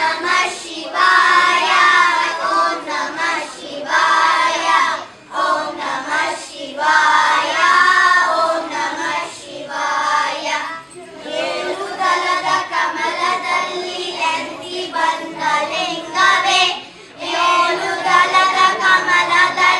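A group of children singing a song together in unison, in phrases broken by short pauses.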